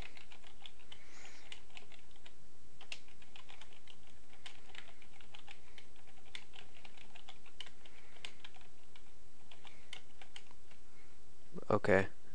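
Computer keyboard being typed on: a run of quick, irregularly spaced key clicks, over a steady background hiss. A man's voice starts just before the end.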